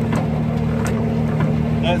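Skid steer engine running steadily at an even, constant pitch.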